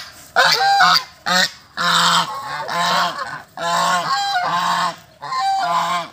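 Domestic geese honking repeatedly, about seven loud calls in quick succession with short gaps between them.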